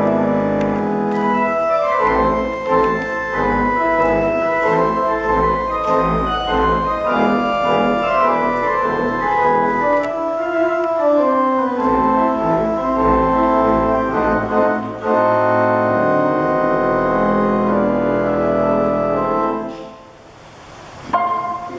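Organ playing lively silent-film accompaniment: sustained chords and running melody over deep bass pedal notes, with a swooping slide in pitch about ten seconds in. The music drops away just before the end.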